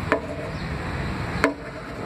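Two sharp taps about a second and a half apart, each followed by a very short pitched sound, over a steady low hum.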